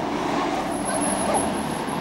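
Steady rushing noise of a passing road vehicle. A faint, high-pitched whine joins it a little under a second in.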